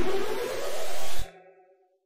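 A loud rushing noise, like a sound effect, with a tone rising in pitch, cut off suddenly a little over a second in; a faint tone trails off after it, then silence.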